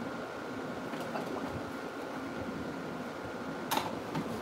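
Room tone in a small workroom: a steady fan-like hum with a faint high whine, light handling sounds, and one brief sharp noise near the end.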